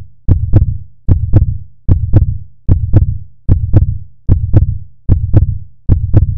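Heartbeat sound effect: paired deep thumps, lub-dub, repeating steadily a little more than once a second.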